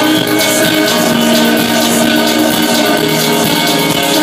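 Live electronic dance music played by a band on synthesizers, drums and guitar: a steady beat of sharp high percussion under sustained synth tones, one low note held for a couple of seconds from about a second in.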